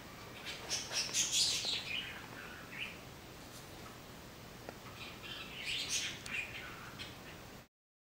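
Faint high-pitched chirping in two bursts, one starting about half a second in and one around six seconds in, over a low steady hiss; the sound cuts off abruptly near the end.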